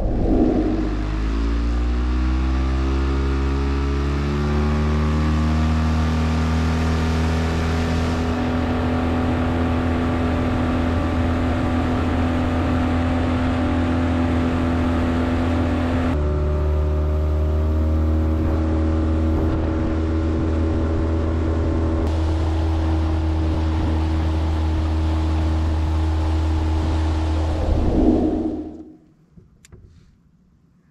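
A boat's outboard motor speeding up from low revs, then running at a steady high speed across the water. Its tone shifts suddenly about halfway through, and near the end it surges briefly, then throttles back and dies away.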